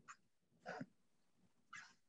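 Near silence: room tone in a pause between sentences, with two faint brief sounds about a second apart.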